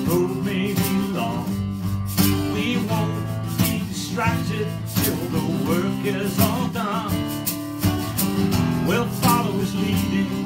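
A man singing a worship song while strumming an acoustic guitar.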